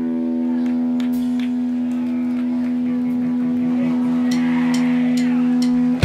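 An electric guitar chord held and ringing out steadily through the amplifier without fading, with faint scattered crowd noise under it; the ringing breaks off at the very end.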